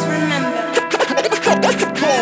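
Hip-hop instrumental beat: a held sampled chord over a bass note, with quick back-and-forth turntable scratches of a short sample starting about half a second in.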